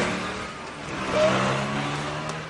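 A car engine running, its low note holding fairly steady.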